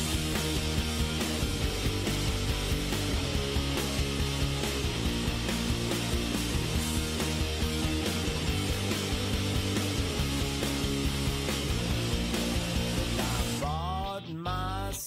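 Rock song with distorted electric guitars, bass and drums playing an instrumental passage without vocals.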